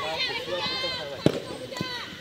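High-pitched shouts from players calling across a field hockey pitch. A little past halfway comes one sharp crack, the loudest sound, typical of a hockey stick striking the ball, followed by a lighter knock about half a second later.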